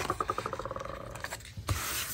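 Sticker being peeled off its paper backing: a quick run of clicks that speeds up, then a soft rub of paper as it is smoothed down near the end.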